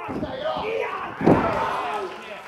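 Wrestlers' bodies slamming down onto a pro-wrestling ring's canvas and boards after a lift, one loud impact just over a second in, with shouting voices around it.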